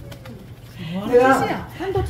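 A person's drawn-out, wordless vocal exclamation starting about a second in, its pitch sliding up and then down.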